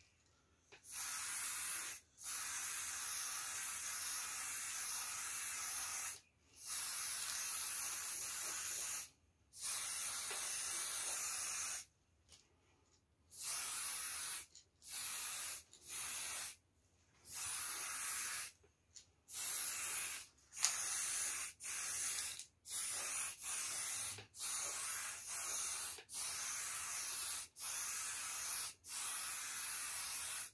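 Aerosol spray-paint can hissing in on-off bursts as blue paint goes onto the lamp shade: sprays of several seconds each at first, then a quick run of short bursts of about a second each in the second half.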